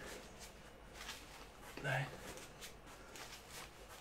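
A man's voice saying one counted word, "nine", about two seconds in, with faint short rustles of movement around it.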